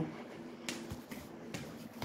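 A couple of short, sharp clicks against low room noise: one about two-thirds of a second in and a weaker one about a second and a half in.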